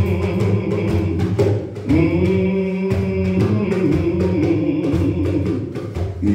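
Singing in long, held notes that slide into pitch, over steady drumming.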